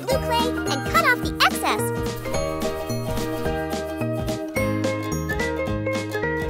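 Cheerful children's background music with a bell-like tinkling melody over a steady bass beat. In the first two seconds there are high, sliding voice-like notes.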